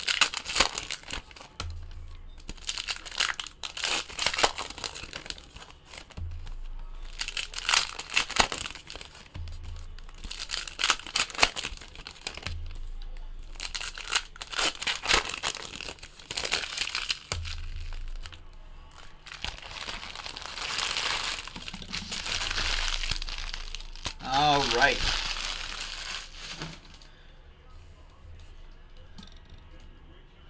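Plastic-foil trading-card pack wrappers crinkling and tearing as packs are ripped open and the cards pulled out, in repeated irregular bursts of rustling. A brief voice sound comes late on.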